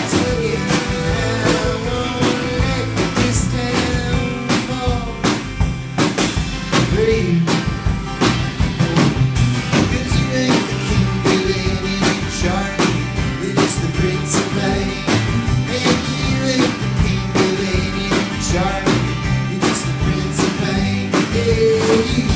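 Live band playing a country-rock song: strummed acoustic guitar over a steady drum beat, with vocals.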